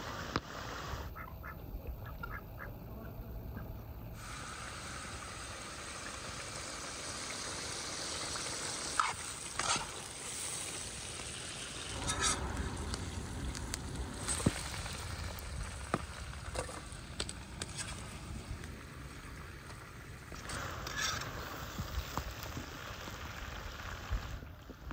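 Lamb pieces frying in a large open pan: a steady sizzle, with several short, sharper sounds standing out over it, the loudest about nine and fourteen seconds in.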